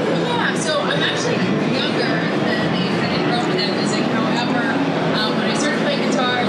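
A woman talking into a handheld microphone over the steady, dense chatter and din of a crowded convention hall.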